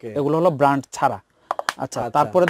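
A man speaking, then a quick run of light plastic clicks near the end as a small clear plastic case is handled and snapped shut.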